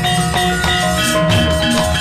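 A Javanese gamelan ensemble playing the accompaniment to a shadow-puppet show: bronze metallophones strike ringing notes, several a second, over a steady low layer.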